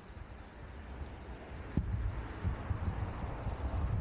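Low, uneven rumble of wind buffeting the microphone, with a faint knock about two seconds in.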